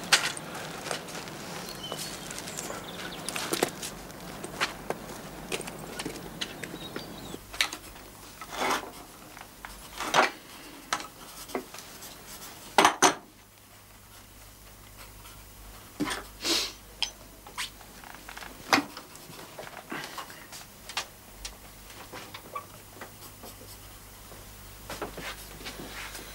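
Scattered light clicks and knocks of small objects being handled on a table, with two sharp knocks close together about thirteen seconds in.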